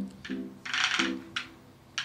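Background music with a few sharp clicks of metal tongs against a ceramic platter as pieces of meat are set down. A short hiss about halfway through is the loudest sound.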